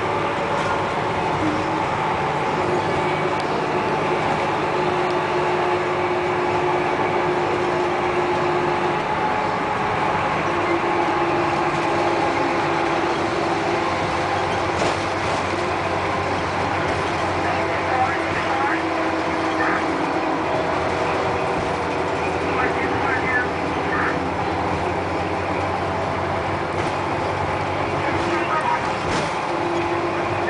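Bus interior while driving: the engine and the road noise run steadily, with a low hum and a few held whining tones, and voices are faintly heard in the background.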